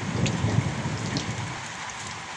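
Light rain falling on garden plants and into an open plastic water barrel, with a few separate drop taps. A low rumble sits under the rain in the first second or so.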